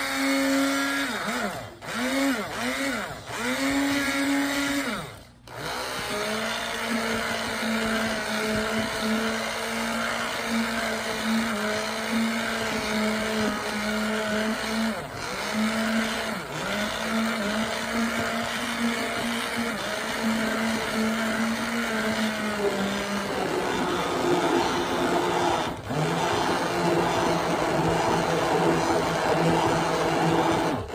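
Hand-held electric stick blender running with a steady motor whine, cut off and restarted several times in the first few seconds, its pitch dipping and recovering each time. From about six seconds in it runs continuously at a lower pitch, which steps down again near the end.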